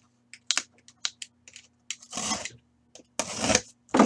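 A sealed cardboard case being slit open with a box cutter: a few light clicks and taps of handling, then two longer scraping sounds, about two seconds in and about three seconds in.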